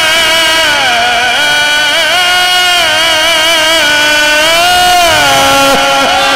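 A man's solo voice in Egyptian religious chant, holding long, ornamented notes that bend up and down through a microphone, the melody sinking lower near the end.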